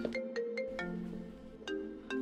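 Mobile phone ringing: a melodic ringtone of short, repeating chime-like notes.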